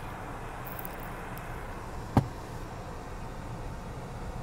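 A 2021 Volkswagen Jetta idling, a steady low hum heard from inside the cabin, with one short knock about two seconds in.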